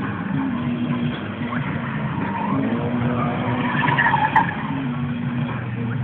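Drift car's engine revving up and down while its tyres squeal in a long slide, the squeal strongest from about two and a half to four and a half seconds in.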